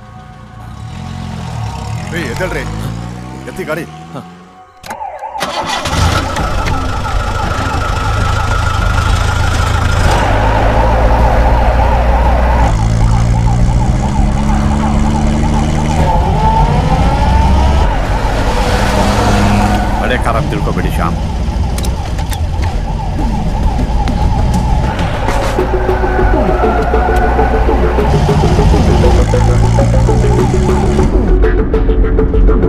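Car engine revving up for the first few seconds, then, after a brief drop near five seconds, a siren wavering rapidly over loud engine and road noise, with a film score underneath.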